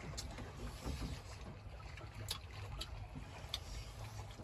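Steady low rumble aboard a fishing boat at sea, with a few light clicks of chopsticks against rice bowls during a meal.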